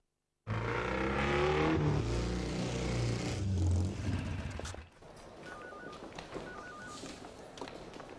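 A motor scooter's engine running and revving loudly, cutting in suddenly about half a second in and dying down after about four seconds. Then two short double electronic telephone beeps over a quieter background.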